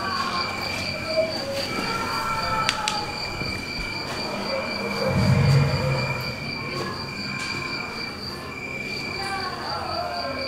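A display's soundscape of steady, high, cricket-like chirping, with faint gliding tones beneath it and a low swell about five seconds in.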